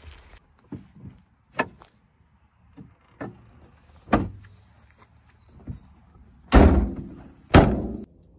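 Scattered light knocks and clicks of handling at a van's rear storage compartment, then the two rear doors of a Fiat Ducato van slammed shut one after the other, about a second apart, the loudest sounds.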